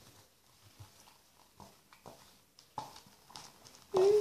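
Faint, scattered light clicks and taps from stirring and handling a plastic cup of slime mixture.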